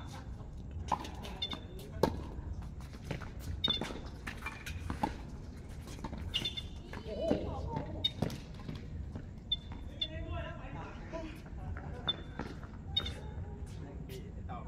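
Tennis balls struck with rackets and bouncing on a hard court during a doubles rally: sharp pops coming irregularly, about one to one and a half seconds apart, with players' voices in between.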